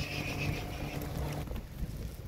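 Low steady outdoor rumble, largely wind on the microphone, with a faint steady hum underneath.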